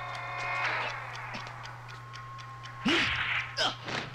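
Soundtrack of an early-1970s Japanese action film: a held, chord-like tone in the first second, then a short noisy burst with a brief voice-like cry about three seconds in, over a steady low hum.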